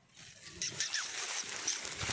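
A goat's hooves crunching and rustling through dry crop stubble and straw as it walks and turns.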